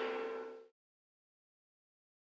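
Steady hum with a few held tones from the running inverter/charger, fading slightly, then cut off abruptly less than a second in, leaving complete silence.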